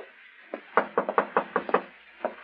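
A quick run of knocks on a wooden door, about seven raps in a second, starting about half a second in: a radio-drama sound effect of a visitor arriving at a hotel room.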